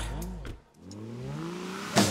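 A break in a live rock band's performance: the music thins out and almost stops about half a second in, then a single pitched sound glides slowly upward as a build back into the song.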